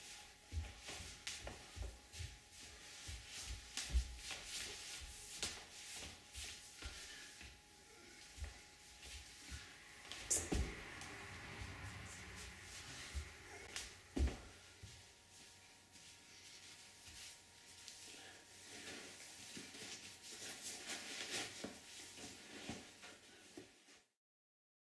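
Soft footsteps on a hard floor in a small, bare room, with scattered clicks and knocks. A louder knock comes about ten seconds in and another about fourteen seconds in.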